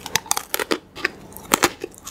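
Crisp crunches of chocolate-coated Pocky biscuit sticks being bitten and chewed: a quick run of crunches at the start and another pair about one and a half seconds in.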